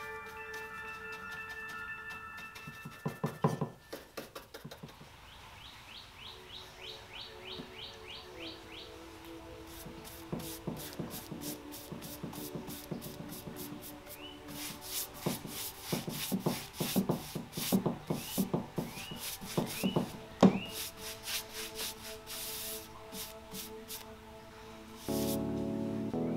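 Paintbrush bristles rubbing and scratching over a painted wooden table in quick, repeated strokes: stippling dabs on a leg near the start, then dry dragging strokes across the top to build a faux linen texture. Soft background music with held notes runs underneath.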